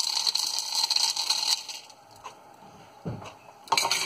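Dry, crunchy TVP sausage crumbles poured from a cup through a funnel into a glass mason jar. A dense rattling patter lasts about a second and a half, then trails off.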